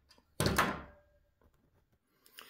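A single knock about half a second in, fading with a short ringing tail: a small metal tool or pin being set down on the hard, glossy worktop.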